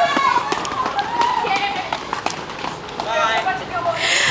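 Indistinct voices of a group talking while walking, with short ticks of footsteps on a paved path.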